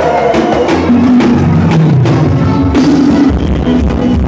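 Live forró band playing loud amplified music, an instrumental passage with a horn section of trumpet and saxophones over a steady drum-kit beat.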